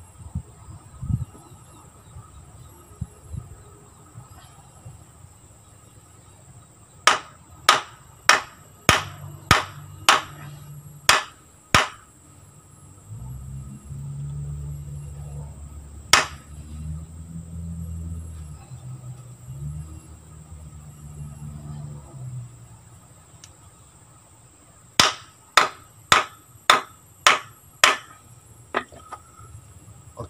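Sharp knocks of a hand-made machete's tang being driven into its wooden handle: a run of about eight strikes, roughly two a second, about a quarter of the way in, a single knock midway, and a faster run of about six near the end. A low rumble of handling sits between the runs.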